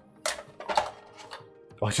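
Flexible spring-steel print sheet of a Prusa i3 MK3 lifted off its magnetic heatbed and flexed: a few short metallic clicks and scrapes as the finished print pops off the sheet. Background music plays softly underneath.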